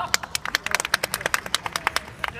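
Scattered, irregular handclaps from a few spectators, about fifteen sharp claps over two seconds, with a short high call just at the start.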